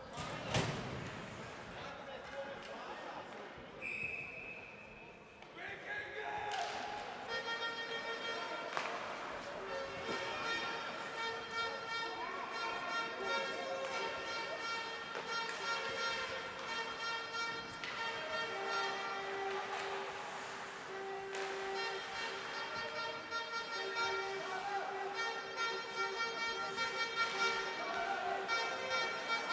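A hard knock just after the start, then a short, high referee's whistle about four seconds in. From about seven seconds on, music plays over the ice rink's speakers in long held notes.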